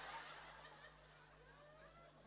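Audience laughing and chuckling faintly, the laughter fading away over the first second into scattered soft chuckles.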